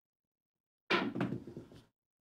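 Pair of dice thrown down a craps table: a sudden clatter about a second in as they land, bounce and tumble to a stop, dying away within a second.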